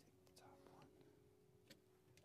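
Near silence: faint murmured or whispered speech over a soft held tone.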